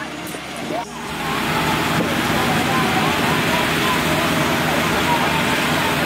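People talking, then about a second in a sudden change to a steady, loud rushing hiss with voices faintly beneath it.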